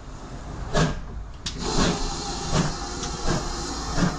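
South Devon Railway steam locomotive working, with a steady hiss of steam broken by repeated short exhaust chuffs.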